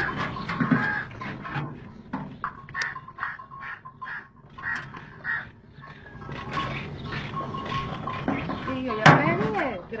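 Traditional stone flour mill running, its millstone grinding with irregular clicks and knocks, under people's voices.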